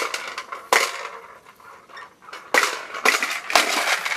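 A toddler's push-along popper toy being pushed across a hard floor, its plastic balls snapping against the clear dome in a run of sharp, clattering pops. There are about five uneven pops: one at the start, one just under a second in, then three close together in the second half.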